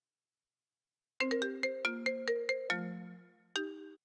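A short ringtone-like melody of quick, bell-like struck notes starting about a second in: a rapid run of about nine notes, then a lower note left to fade, and one more note cut off at the end.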